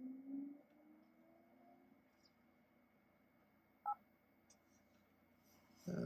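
Near silence, broken about four seconds in by a single short two-tone electronic beep from a Palm TX handheld as it finishes connecting to Wi-Fi.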